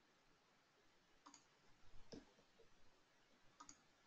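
Near silence with a few faint, short clicks: about a second in, around two seconds, and again near the end.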